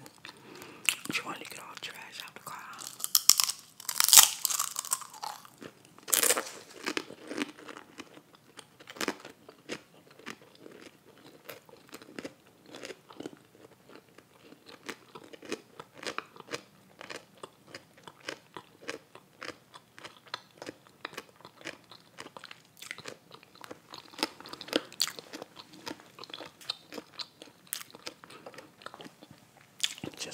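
Close-miked eating of a grilled cheese sub with potato chips: loud crunchy bites about three to four seconds in and again around six seconds, then steady chewing with many small crunches and wet mouth clicks.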